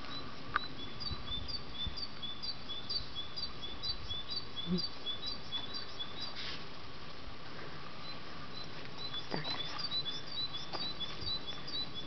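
A small songbird singing a high two-note phrase over and over, several short chirps a second, pausing briefly around the middle.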